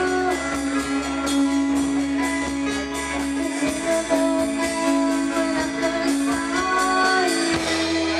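A live band playing a song: held pitched notes over a steady percussion beat.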